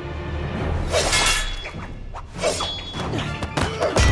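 Orchestral score under a series of crashing impact sound effects, several sharp crashes with a ringing tail, the heaviest a deep thud near the end as a giant blade strikes and cracks the stone floor.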